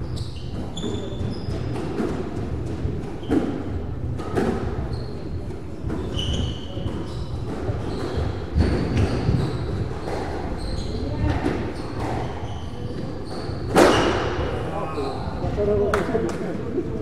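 Squash rally on a wooden-floored court: the ball smacks off rackets and walls every second or two, with short, high squeaks of court shoes on the floor between hits. The loudest hit comes near the end.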